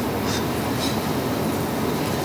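Steady room noise, an even hum and hiss with no distinct events, typical of air conditioning in a large room.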